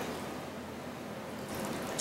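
Faint, steady pouring of hot heavy cream from a saucepan onto chocolate chips in a glass bowl.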